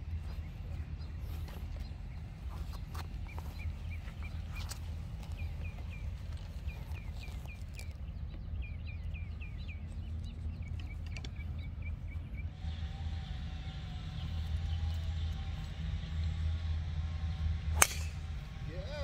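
Outdoor golf-course ambience with a steady low rumble and a bird chirping over and over in short, evenly spaced notes. Near the end comes one sharp crack, a driver striking a golf ball off the tee.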